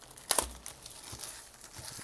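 Plastic shrink wrap being pulled off a cardboard booster box: a sharp tear about a third of a second in, then softer crinkling of the loose plastic.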